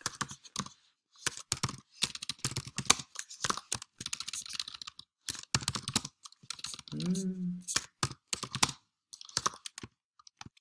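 Typing on a computer keyboard: irregular runs of keystroke clicks while an equation is entered. A brief murmur of voice about seven seconds in.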